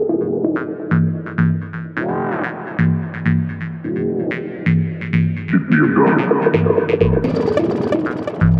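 Electronic techno music from a live set: a pulsing, throbbing bass line under sweeping synth tones and regular sharp high ticks. A brighter, noisier layer comes in near the end.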